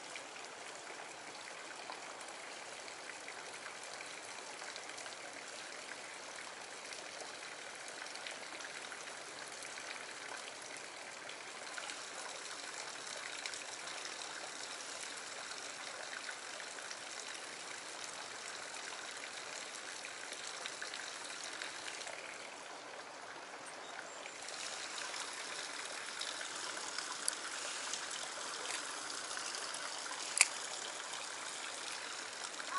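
Shallow stream water running and trickling over rock: a steady, even rush that dips briefly about three quarters of the way through, then comes back a little louder.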